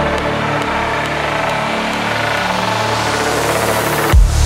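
Psytrance build-up with the kick drum dropped out: sustained bass and synth tones under a white-noise sweep that rises steadily in pitch.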